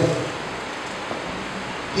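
Steady hiss of room and microphone noise in a pause between sentences of a man's amplified speech, the end of his last word fading out at the start.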